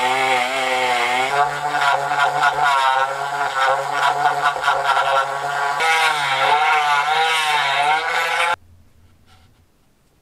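Handheld rotary tool with a small disc spinning against a steel rivet, grinding and cleaning it: a high, steady motor whine whose pitch wavers up and down as the disc bites the metal. The tool stops suddenly near the end.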